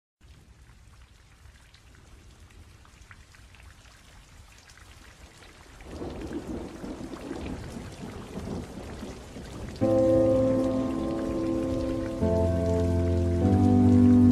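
Recorded rain falling steadily at a low level, joined about six seconds in by a louder low rumble of thunder. About ten seconds in, sustained chords of an electronic chillstep track come in over the rain and change twice.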